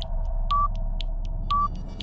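Film-leader countdown sound effect: a short beep once a second, with a click between the beeps, over a steady hum and low rumble.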